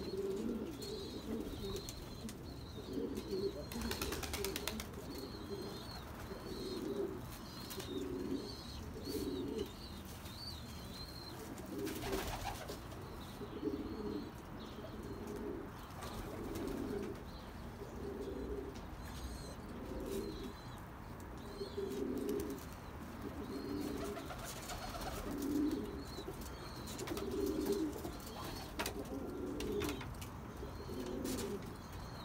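Pigeons cooing over and over, a low coo about once a second, with faint high chirps of small birds above them.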